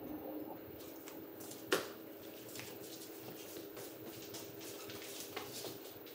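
Carom billiard balls rolling after a shot: one sharp click of ball striking ball a little under two seconds in, with a few fainter knocks before and after.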